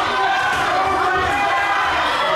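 Crowd of spectators shouting and calling out, many voices overlapping in a steady din.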